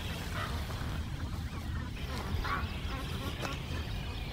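Waterfowl calling a few times in short arched calls, the clearest about two and a half seconds in, over a steady low rumble on the microphone.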